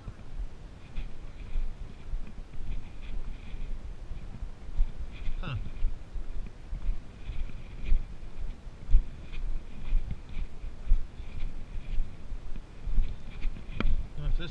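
A hiker's footsteps and trekking-pole strikes on a dirt trail, a steady series of low footfalls about once a second, heard close to a body-worn camera.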